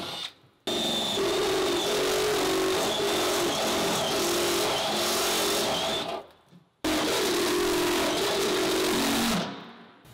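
Cordless drill with a step bit boring out holes in the van's sheet-metal wall, running steadily with a high whine. It runs in three spells: it stops briefly about half a second in and again just after six seconds, and the last spell trails off near the end.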